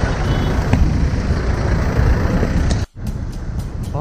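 Motorcycle riding through city traffic: engine and road noise with heavy wind rumble on the microphone. About three seconds in it cuts off suddenly, and quieter street traffic noise follows.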